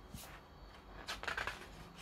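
Paper pages of a large book being turned by hand: faint rustling swishes, the loudest a little past halfway.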